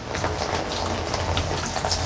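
Water poured from a plastic gallon jug splashing steadily into an inflatable kiddie pool.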